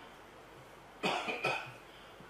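A man coughing twice into a lectern microphone, two short sharp coughs about half a second apart, starting about a second in after low room tone.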